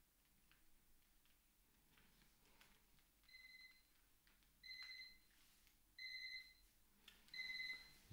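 Electronic alarm beeping four times, evenly spaced a little over a second apart and louder with each beep: a timer going off to mark the end of the hour.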